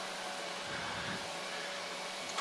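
Cessna Grand Caravan's single turboprop engine running at taxi power, heard inside the cockpit as a steady hiss with a faint steady whine.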